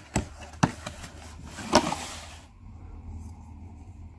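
Cardboard oil filter box being handled as the filter is pulled out: a couple of sharp cardboard clicks, then a scraping rustle about two seconds in.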